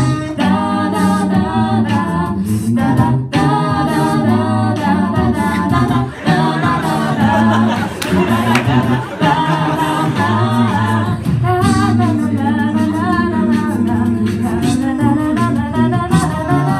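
Six-voice a cappella group singing in harmony into microphones, amplified through PA speakers: a low sustained bass layer under higher moving vocal lines, with no clearly sung words.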